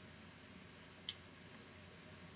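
A single sharp click about a second in, typical of a computer mouse button, over faint room tone.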